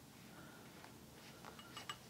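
Near silence: room tone, with a few faint ticks of handling near the end.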